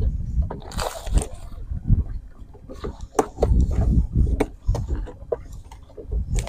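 Irregular knocks, clicks and water sloshing from handling gear and bait on a boat deck, over a heavy low rumble of wind on the microphone.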